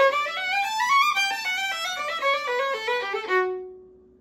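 Solo violin playing a fast run of notes that climbs up to about a second in, steps back down, and ends on a held note that fades out near the end.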